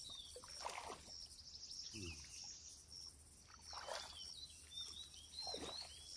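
Faint pond-side ambience: short high chirps repeating about twice a second with a few arching chirps, and water sloshing softly three times as people wade through a muddy pond.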